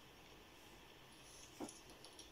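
Near silence with faint pencil scratching on paper, broken once about one and a half seconds in by a short, sharp sound.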